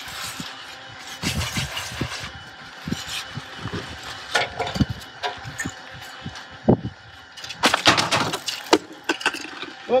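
Irregular scrapes, rustles and soft knocks of hand plastering: earthen plaster being worked onto a dome's peak and a bucket being handled, with a louder flurry of scraping about eight seconds in.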